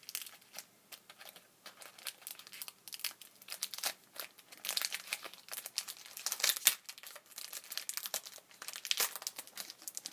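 Trading-card booster-pack wrapper crinkling and tearing as the pack is opened, in a run of quick, irregular crackles that are loudest past the middle.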